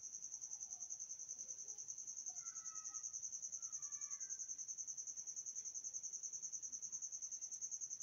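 A cricket trilling steadily: a high-pitched chirp pulsing evenly about ten times a second. A few faint short higher tones sound briefly in the middle.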